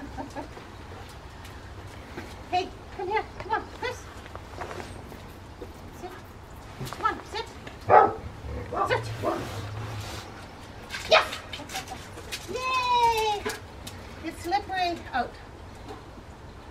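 Rottweiler barking and whining, with short calls scattered throughout and one longer call that falls in pitch near the end.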